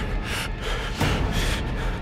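Quick, sharp breaths, several in two seconds, over loud dramatic music with a heavy low end and a hit about a second in.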